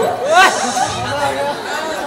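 People talking, with one voice rising sharply about half a second in.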